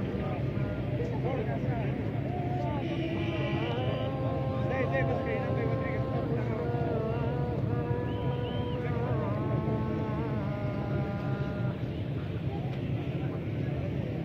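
Background voices of people talking and calling out, some with long held notes, over a steady low hum.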